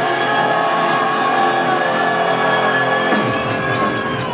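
A live punk rock band with electric guitars and drum kit plays through a concert PA: a long held chord rings out, and the drums come back in about three seconds in.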